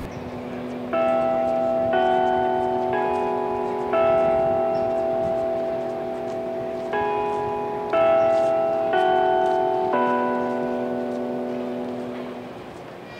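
A slow melody of chimes: bell-like notes struck about once a second in two phrases of four, each ringing on and slowly fading.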